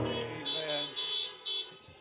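Car horns honking from the parked cars in three short bursts, as applause after a song, while the song's last chord fades out at the start.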